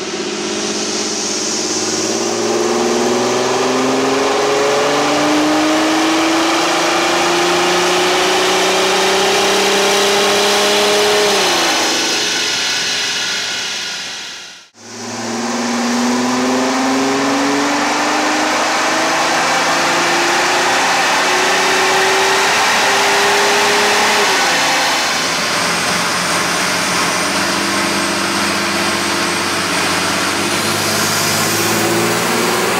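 Kia Mohave 3.0 V6 turbodiesel run at full throttle on an all-wheel-drive chassis dynamometer: the engine note climbs steadily in pitch through a long pull, then falls away as the throttle is released. After a brief break there is a second pull that rises the same way and drops off, leaving the engine running lower and steadier near the end.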